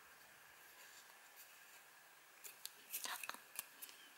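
Near silence at first, then, from about two and a half seconds in, faint clicks and rustling from a small card sail being pushed into a slot cut in a plastic bottle cap.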